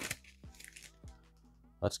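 Faint crinkling and rustling of a torn-open foil trading-card pack wrapper as the cards are slid out, over quiet background music with long held tones.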